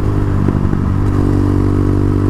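Quad bike engine running steadily at cruising speed on the road, a dense, even hum with a brief wavering in pitch about half a second in.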